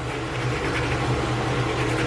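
Manual toothbrushes scrubbing teeth in quick back-and-forth strokes over a steady low hum.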